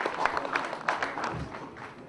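Audience applauding with many hands clapping, the applause thinning and fading out about a second and a half in.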